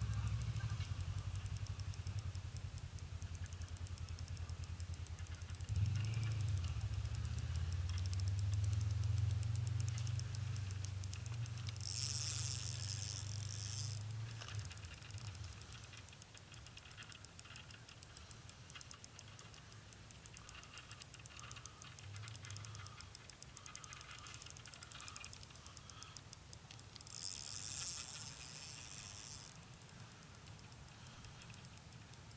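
Fishing reel being cranked: a fast, steady mechanical ticking throughout, with a low rumble under the first half and two brief hissing bursts, one around the middle and one near the end.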